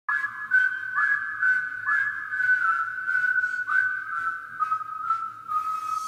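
A whistled melody of a few held notes, each sliding up into its pitch, with soft ticks keeping time about twice a second: the intro to the song.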